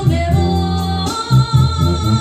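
A woman singing karaoke into a handheld microphone over a backing track, holding a long, steady note through the second half.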